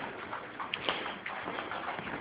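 Footsteps across a floor, with a few light taps and clicks.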